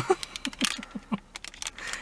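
Foil blind-bag packet crinkling in the hands as it is handled, a run of irregular sharp crackles, with short bits of soft laughter.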